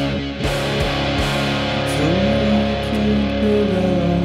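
Instrumental passage of an alternative rock song, with guitars holding sustained notes and a note sliding up in pitch about halfway through.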